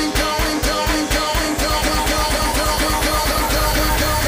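Instrumental section of an electro-pop dance track: a fast, steady bass-and-drum pulse under a repeating synth riff, with no vocals. Near the end the pulse drops away into a held low note while a rising sweep builds.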